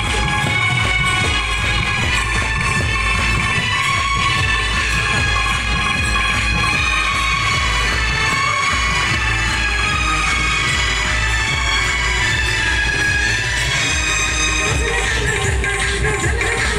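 Music playing steadily throughout.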